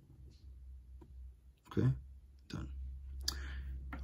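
A man's voice says "okay, done" briefly. Before it there are faint small clicks over a low steady hum.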